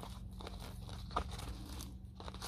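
Fingers picking and tearing moss off the surface of potting soil in a plastic nursery pot, giving faint crackling and rustling with small clicks, over a steady low hum.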